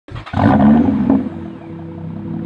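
Car engine revving, loudest for about the first second and then dropping back to a lower steady hum as it fades.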